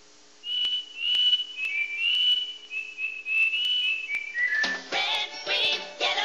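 A whistled tune of short held notes that ends in a quick falling run, followed near the end by busy, bright music coming in.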